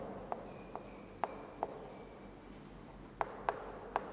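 Chalk writing on a chalkboard: faint scratching broken by sharp, irregular taps as the chalk strikes the board, four in the first second and a half, then a lull, then a few more near the end.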